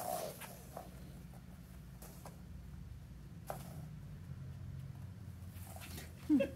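Quiet room tone with a steady low hum and a few faint, scattered taps.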